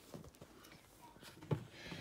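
Quiet room with faint handling noise and a single soft knock about one and a half seconds in.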